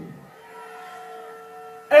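A faint steady tone of several pitches held together, starting about half a second in and ending just before the speech resumes.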